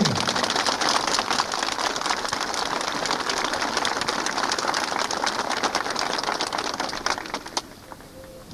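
Crowd applauding, a dense patter of many hands clapping that dies away shortly before the end.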